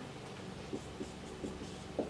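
Marker pen writing on a whiteboard: a few faint short strokes over a low steady room hum.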